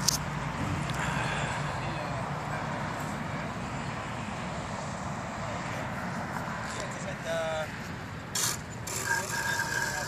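Steady road traffic noise, with a low hum that fades away in the first couple of seconds. Near the end come a brief rising pitched sound and two sharp clicks.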